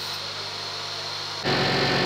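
Steady low electrical-sounding hum with hiss and no distinct event. About one and a half seconds in it gives way abruptly to a louder steady background noise.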